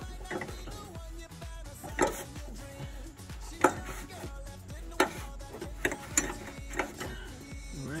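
Scattered sharp clicks and knocks from a gloved hand working a rag around a car's fuel filler neck tube and the metal underbody, about five distinct knocks over several seconds.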